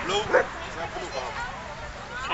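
Huskies giving short high-pitched calls, with people talking around them.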